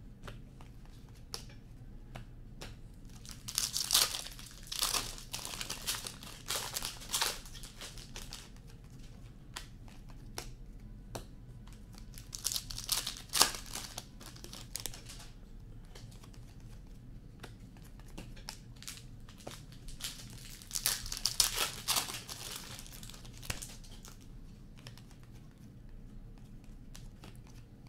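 Hockey trading cards and their packaging handled by hand: three bursts of crinkling and rustling, with light clicks of cards between them.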